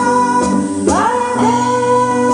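A live pop band: a woman singing over electric guitars through a PA. About a second in, her voice slides up into a long held note.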